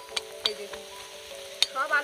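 An aloo paratha frying in oil on an iron tawa, with a metal spatula clicking against it three times. Background music with steady held tones plays throughout, and a voice comes in near the end.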